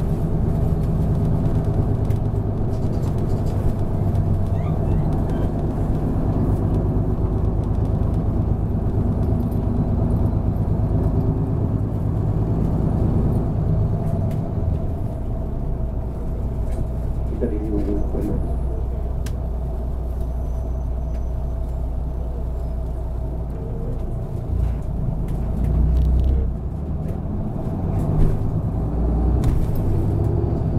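A city bus running, heard from inside the passenger cabin: a steady engine hum and road rumble, with the engine note changing about halfway through as the bus slows.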